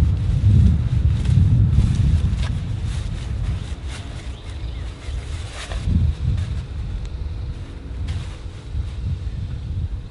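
Wind buffeting the microphone outdoors, a fluctuating low rumble, with light rustling as a folded car sunshade is handled and pushed into its pouch.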